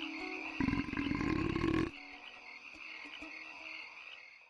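A deep, rapidly pulsing frog croak lasting just over a second, about half a second in, over a steady chirring night chorus of insects and frogs that fades near the end.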